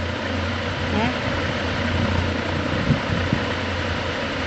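Steady low mechanical hum with an even hiss over it, constant throughout, with a brief faint vocal sound about a second in.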